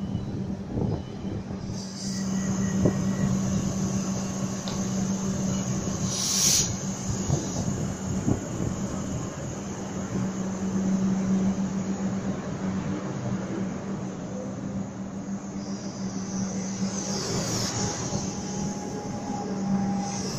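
Comeng electric suburban train pulling out of the platform, its cars rolling past with a steady electrical hum and wheel-on-rail noise that grows about two seconds in. There is a single sharp clank about six and a half seconds in, and high hissing comes and goes as the cars pass.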